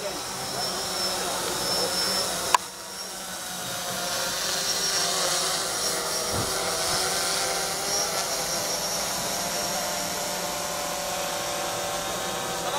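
A steady whirring noise with faint voices beneath it, broken by one sharp click about two and a half seconds in.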